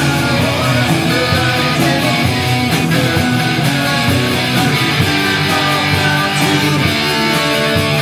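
Live rock trio of electric guitar, electric bass and drum kit playing a classic-rock cover song, loud and continuous.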